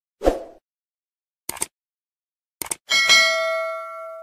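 Subscribe-button animation sound effects: a short whoosh, then two quick double clicks about a second apart, like a mouse button pressed and released, then a notification-bell ding that rings on and slowly fades.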